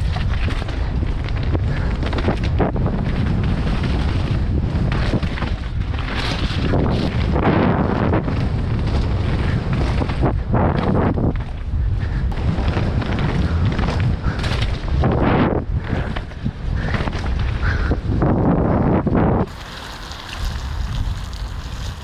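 Wind noise on a helmet camera's microphone as a downhill mountain bike descends a rocky dirt trail at speed, with knocks and rattles from the bike over stones and roots. The noise drops suddenly quieter near the end.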